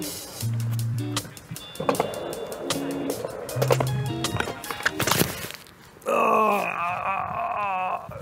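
Background music over a skateboard rolling on a concrete ramp, then a sharp crash about five seconds in as the rider falls and the board hits the concrete. A drawn-out voice follows near the end.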